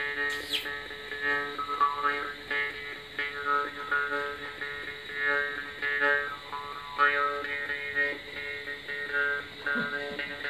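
Balochi chang (jaw harp) being played: a steady drone under repeated plucks, its overtones shifting as the player changes the shape of his mouth.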